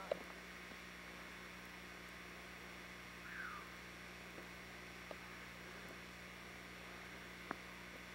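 Steady electrical hum and hiss from an old camcorder recording, with a few faint clicks, the sharpest near the end, and a brief faint falling call about three and a half seconds in.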